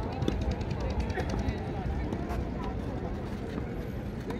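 Steady low rumble of open-air background noise with faint, distant voices and a few light ticks.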